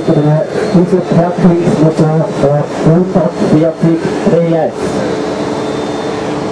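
A man speaking German in quick phrases, over a faint steady hum.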